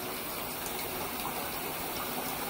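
Steady gush of running water churning in a bathtub.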